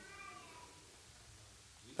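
A faint, brief high-pitched vocal sound, slightly falling in pitch, in the first second, then a quiet room.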